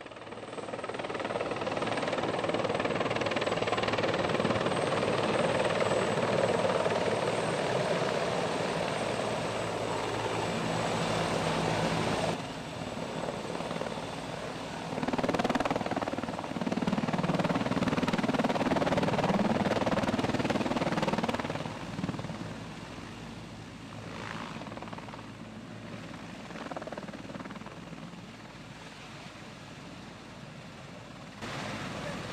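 Military helicopter noise: rotor and engine noise heard from inside the cabin, then after a change about 12 seconds in, a CH-53 heavy transport helicopter's rotors as it comes in to land, loudest in the middle and quieter over the last several seconds.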